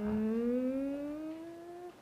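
A person's long drawn-out 'uuun' of acknowledgement, one held vocal note whose pitch rises slowly and steadily, fading out just before the end.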